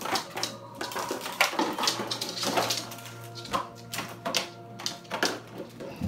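A dog chewing and crunching an empty plastic bottle, giving irregular crackles about once a second. Music plays in the background.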